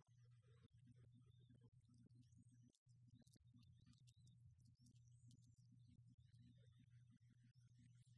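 Near silence: a faint steady low hum with scattered faint ticks.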